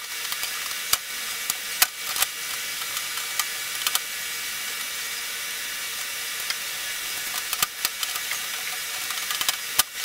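Scattered clicks and light rattles of a wiring harness and plastic panel parts being handled, over a steady background hiss.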